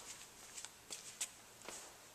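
Faint, irregular footsteps and clothing rustle as a person walks up and sits down on a bench, with a few soft clicks spread through.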